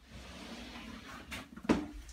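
Clear plastic enclosure tub being slid out of its slot in a shelving rack: a soft scraping slide, then a couple of sharp plastic knocks near the end as it comes free.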